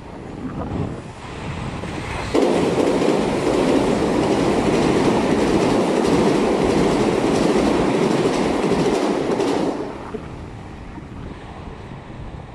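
A red Meitetsu electric train passing on a nearby track. The noise rises suddenly about two seconds in, stays loud for about seven seconds, then drops away.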